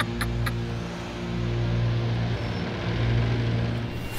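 Steady engine drone of cartoon vehicles driving at speed, with a few short clicks right at the start.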